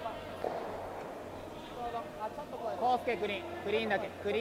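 Curling brooms sweeping the ice ahead of a moving stone, with loud shouted calls from the players about two and a half seconds in that run to the end.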